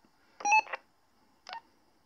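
PMR two-way radio beeps: a short electronic beep of several steady tones about half a second in, then a fainter brief blip about a second later. They come as the transmission on the Intek radio ends.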